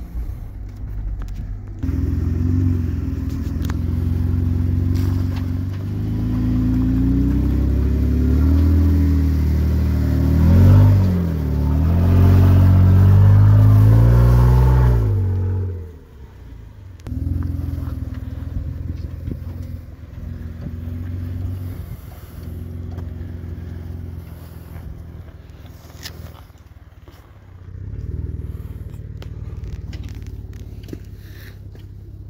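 Off-road Jeep engine working under load on a rock climb, its revs rising and falling, loudest from about 12 to 15 seconds in. The revs then drop off sharply to a quieter, steadier run.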